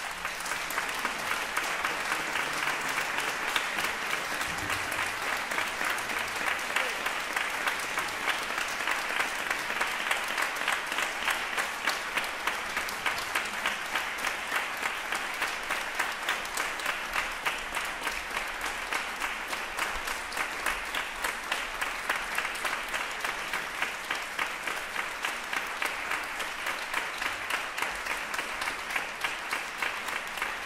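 A large audience applauding, breaking out suddenly after a silence and going on steadily.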